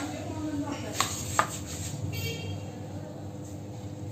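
Three light knocks of a spoon and dishes: one at the start, then two close together about a second in, over a faint steady hum.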